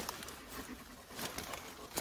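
Faint scraping and rustling of a digging fork being pushed into light, sandy soil among sugar beet leaves.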